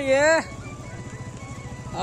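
A small motorcycle engine running low and steady as the bike rides slowly closer, heard as a low rapid putter once a drawn-out call ends about half a second in.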